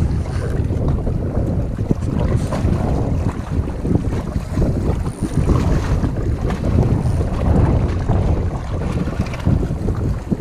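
Wind buffeting the camera microphone in a constant, gusting low rumble, with small waves washing against the shoreline rocks.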